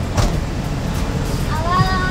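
Steady low vehicle engine rumble on a street, with a short knock about a quarter second in. Near the end a woman makes a brief voiced sound.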